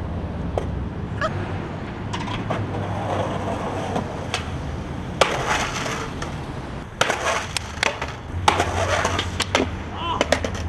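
Skateboard rolling on asphalt with a steady rumble, then sharp clacks and knocks from about five seconds in as the rider falls and slides on the pavement and the board clatters.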